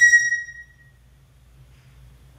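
A pet parrot gives one loud, clear whistled call that slides slightly down in pitch and fades out within about a second.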